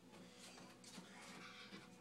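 Near silence: quiet room tone with faint, indistinct noise.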